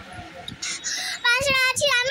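A young girl's voice, soft and breathy for the first second, then singing a long held note from just over a second in.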